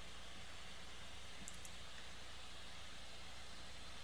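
Faint, steady hiss with a low hum underneath: the recording's background noise and room tone, with no distinct sound events.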